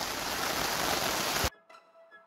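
Heavy rain falling steadily on a tarp overhead and the ground around it. It cuts off suddenly about a second and a half in, giving way to faint music.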